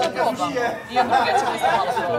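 Several people talking over one another: group chatter.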